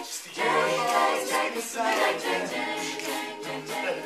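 A cappella group of young male and female voices singing in harmony without instruments. There is a brief break right at the start, then the chord comes back in and is held.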